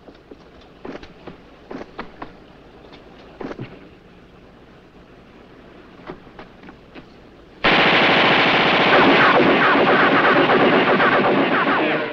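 Faint scattered clicks, then about eight seconds in a machine gun opens up suddenly with one long, loud, continuous burst of rapid live fire.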